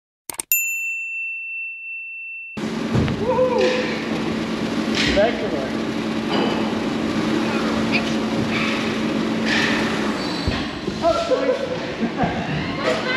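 A click and a steady high ding from a subscribe-button animation effect, lasting about two seconds. About two and a half seconds in, the ski hall's sound cuts in: a steady running noise with a low hum, and indistinct voices.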